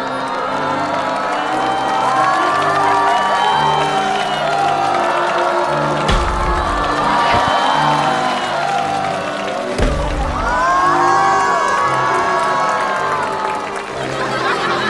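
Music with a steady bass line under many overlapping shouts and whoops from performers and crowd. Two deep booms land about six and ten seconds in.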